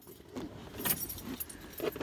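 Keys jangling inside a car cabin, with a few light metallic clinks about a second in.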